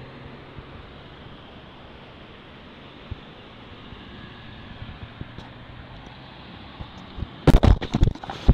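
Steady outdoor street noise from passing traffic. Near the end come several loud, rough bursts of noise on the microphone.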